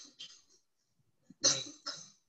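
A short cough about one and a half seconds in, after a pause in the narration, with a smaller second burst just after it.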